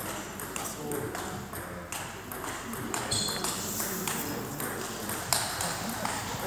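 Table tennis balls being played at the tables: a run of light, sharp, irregularly spaced clicks as the ball strikes bats and table, over the chatter of spectators.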